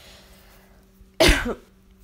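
A woman coughs once, a short, loud cough about a second and a quarter in.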